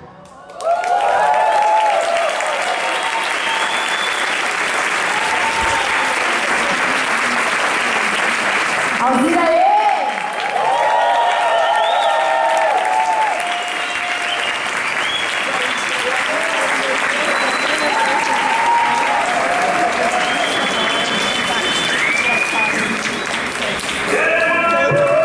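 Concert audience applauding and cheering, starting about half a second in right after the music stops, with whoops and shouts over steady clapping.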